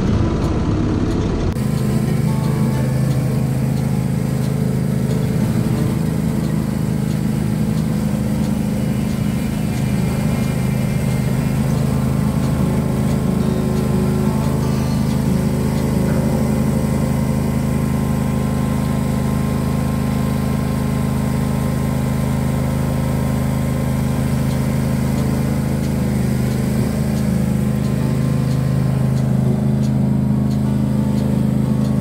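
John Deere garden tractor engine running at a steady speed while it works a front loader.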